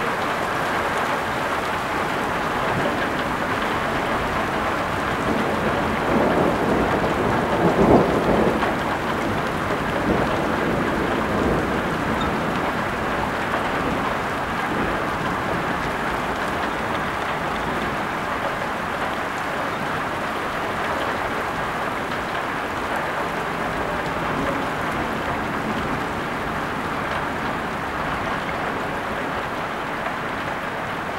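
Heavy rain pouring steadily during a thunderstorm. A roll of thunder swells about six seconds in, is loudest around eight seconds and fades out by about eleven seconds.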